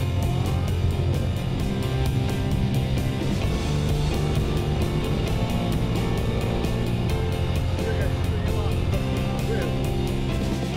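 Background music with a steady beat, with a vehicle engine running underneath.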